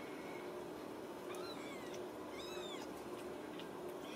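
Young Ragdoll kittens mewing: two short, high-pitched mews that rise and fall, about a second and a half and two and a half seconds in, after a faint one at the start.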